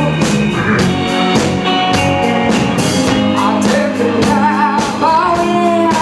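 Live blues-rock band: a woman's lead vocal sung over electric guitars, bass and a steady drum beat. Near the end she holds a note with vibrato.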